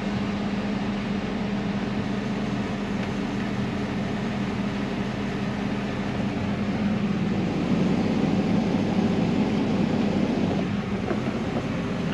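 Tractor engine and grain-cart unloading auger running steadily, heard from inside the cab while shelled corn pours from the auger spout into a truck trailer. The drone grows louder and fuller for a few seconds past the middle.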